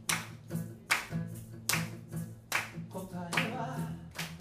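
Acoustic guitar strummed in a steady rhythm, with a sharp percussive hit on the beat about every 0.8 seconds. A voice starts singing near the end.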